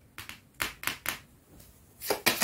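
Tarot cards being handled on a tabletop: four short papery taps and brushes in the first second or so, then a faint rustle, as the cards are gathered up.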